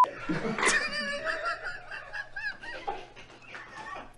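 A man laughing out loud, the laughter gradually trailing off.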